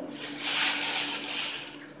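Tissue paper rustling and crinkling as a bunch of artificial flowers is pulled out of a gift bag, with a box fan humming steadily underneath.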